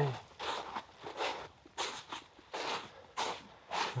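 Footsteps crunching over snow-covered forest ground, about two steps a second.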